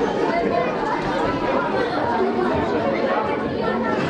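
Babble of many overlapping voices chattering at once in a large hall, with no single voice standing out.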